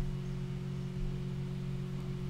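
A steady low hum of a few held tones, unchanging throughout, with no speech over it.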